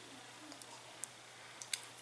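Quiet room tone with a faint steady hum, broken by a few small, sharp clicks: one about a second in and two close together near the end.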